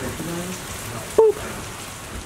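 Steady rain falling, heard as an even hiss, with a brief vocal exclamation just over a second in that is the loudest moment.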